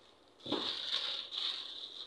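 A shopping bag rustling and crinkling as a garment is pulled out of it, starting about half a second in.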